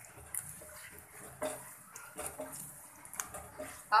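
Whole spices (cumin seeds, dried red chillies, green cardamom) frying in a little hot oil in a nonstick pan, giving a faint sizzle, with a few sharp clicks and scrapes from a spatula stirring them.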